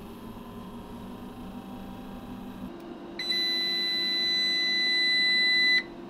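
Orient Power inverter's buzzer giving one long steady beep as it powers up after the power button is pressed. The beep starts about three seconds in, lasts about two and a half seconds and cuts off sharply. Under it is a low hum that steps up in pitch just before the beep.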